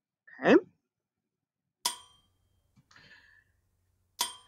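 Slide-show sound effect of a hammer striking railroad track: a single sharp metallic clang with a short ringing tail about two seconds in.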